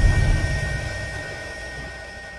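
Deep rumbling sound effect with a few steady ringing tones above it, fading steadily away to silence, a podcast transition sting.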